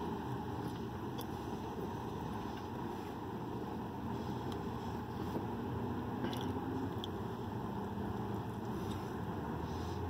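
A person chewing and biting into a burger, with a few faint short clicks, over a steady low hum.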